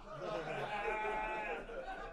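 A faint, drawn-out laugh from the audience, trailing off after about a second and a half.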